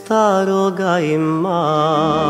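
A solo voice sings a slow, drawn-out melodic line with vibrato over sustained accompaniment. A new phrase starts just after the beginning, dips about three-quarters of a second in, then rises and is held with a wavering pitch.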